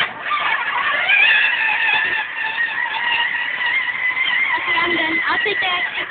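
Electric motor and gearbox of a kids' ride-on toy ATV whining. It starts suddenly, rises in pitch over the first second as it spins up, runs steadily, then drops in pitch near the end as it slows.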